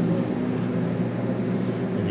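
Steady low mechanical hum, a few low tones held constant, with no distinct knocks or clicks.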